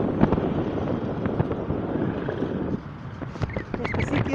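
Road traffic passing, with wind buffeting the microphone and a few short knocks.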